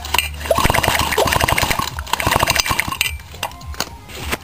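Sachs Spartamet two-stroke engine being spun over for a spark test, giving a fast run of sharp clicks for about two and a half seconds that stops near the end.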